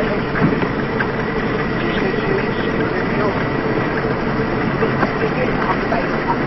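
Steady car engine and road noise heard from inside a moving car's cabin.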